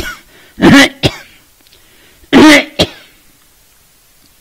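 A man coughing and clearing his throat: several loud, short coughs in the first three seconds, two big ones about two seconds apart, each followed by a shorter one.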